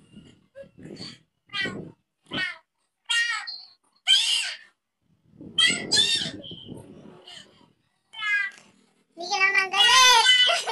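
A series of short, high-pitched meows, roughly one a second, with a longer and louder call near the end.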